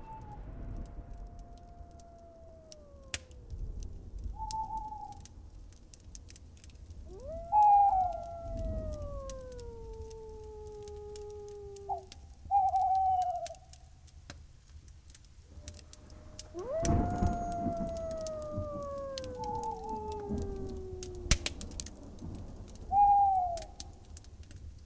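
Wolves howling in a night ambience: long howls that rise quickly and slide slowly down in pitch, coming in three waves, often two voices together. Short higher calls come in between, over a low rumble and scattered clicks.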